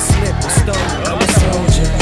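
Hip hop backing beat from a rap track, with deep bass drum hits that drop in pitch several times and crisp high percussion over them; no rapped vocal in this stretch.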